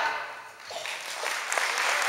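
Audience applause just after a choir's final chord cuts off: scattered claps begin about half a second in and build into full, steady clapping.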